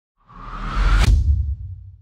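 Logo-reveal whoosh sound effect: a swelling rush with a rising tone that builds to a sharp hit about a second in, then a low rumble that dies away.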